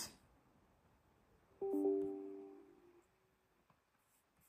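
A short, soft chime of a few notes sounding together from a laptop's speakers, starting suddenly about one and a half seconds in and fading out over about a second and a half. It is typical of a Windows 11 system notification sound.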